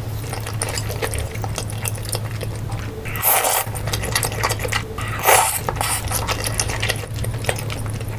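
Close-miked eating sounds: wet clicking chews of spicy noodles, with two loud slurps of noodles about three and five seconds in. A steady low hum runs underneath.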